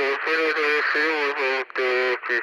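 A man's voice making a high, wavering 'ooo' sound with a few short breaks, a mock-dazed noise of blank incomprehension. It has a thin, radio-like tone with the bass cut away.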